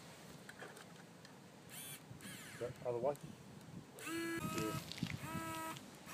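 Faint background voices talking, quiet at first and a little louder in the last two seconds, with a few brief high chirps about two seconds in.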